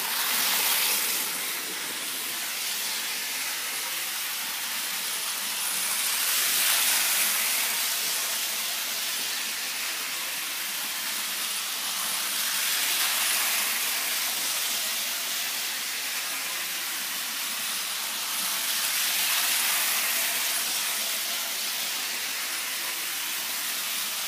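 Bachmann HO-scale Gordon model locomotive and coach running fast on the track: a steady whirring hiss of the motor and wheels on the rails, swelling and fading about every six seconds.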